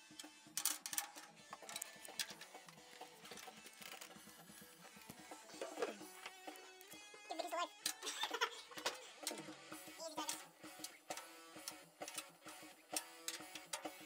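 Quiet clicks, taps and rattles of a snare drum being re-headed by hand: a new head seated on the shell and the rim's tension rods turned, with faint music in the background.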